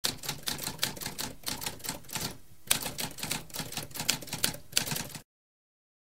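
Typewriter typing sound effect: a quick run of key strikes, several a second, with a short pause about two and a half seconds in, then stopping abruptly near the end.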